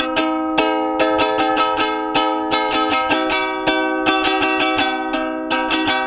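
Ukulele strummed in a steady rhythm of chords, about four strums a second.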